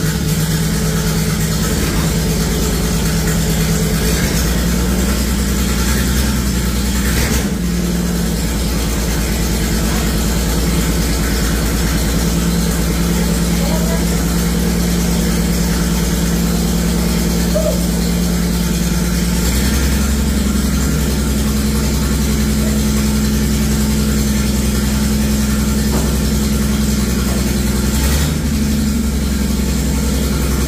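Vintage hot-rod race car's flathead engine idling steadily, its idle speed shifting up and down several times as it is adjusted at the carburetor.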